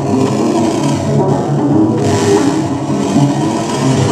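Live electronic noise music from synthesizers and electronic gear: a loud, continuous, gritty drone with hiss swelling and fading in the highs.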